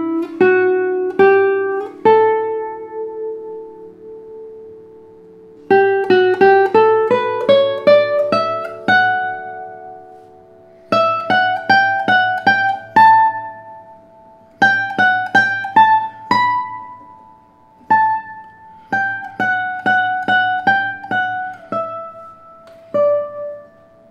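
Nylon-strung classical guitar, a Kenny Hill signature double-top concert model with a spruce top over cedar, fingerpicked in short phrases with pauses between them and its notes left to ring on. A rising run of notes comes about six seconds in.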